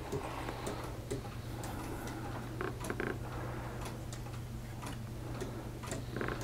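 Escapements of 3D-printed PLA pendulum clocks ticking steadily, about two ticks a second, over a faint steady low hum.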